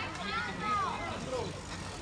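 Distant people's voices calling out in a few long, drawn-out rising-and-falling shouts over a steady low background hum.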